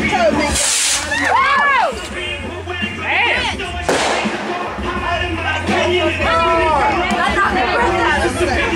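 Backyard consumer fireworks going off: a brief hiss early on, then a sharp bang just before the middle, heard under people's voices and music.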